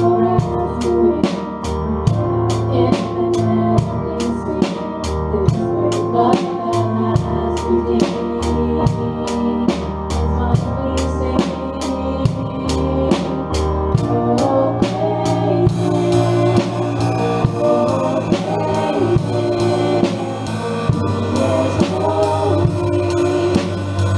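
Live worship band with an acoustic drum kit driving it: sustained bass and keyboard chords under about two or three cymbal strokes a second. About 14 seconds in the groove changes and a steady cymbal wash fills the top end.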